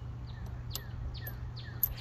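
A bird calling a quick series of short, down-slurred chirps, about four or five a second, with a couple of light clicks near the end.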